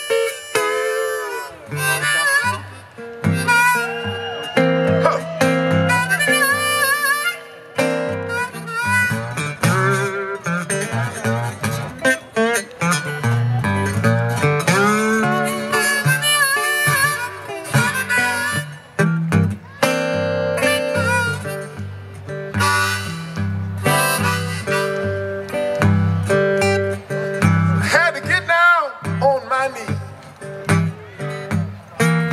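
Blues harmonica solo played from a neck rack, with bent and wavering notes, over a metal-bodied resonator guitar.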